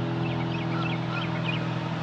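Steady low hum of treatment-plant machinery, with small birds chirping in many short, quick calls over it.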